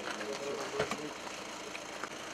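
Men's voices greeting one another over a car engine idling, with one short thud about a second in.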